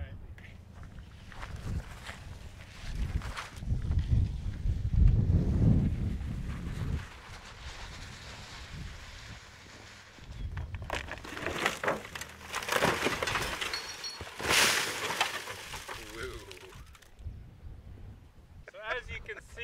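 Wind buffeting the microphone in low gusts. In the second half comes a run of scuffing and rustling noises, the sharpest about three-quarters of the way through.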